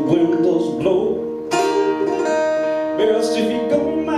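Acoustic guitar strummed: a chord struck about a second and a half in rings on, and another strum comes near the three-second mark.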